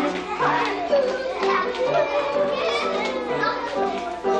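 Music playing in a large room with a group of young children's voices calling and chattering over it.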